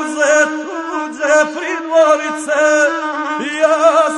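Gusle, the single-stringed bowed folk fiddle, playing a steady droning line with wavering ornaments, under a man's voice chanting an epic verse in the guslar style, with a new sung line starting near the end.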